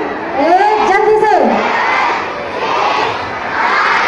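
A large crowd of children shouting and cheering, swelling and falling back in waves. A single drawn-out shout rises, holds and drops away over the first second and a half, on top of the crowd.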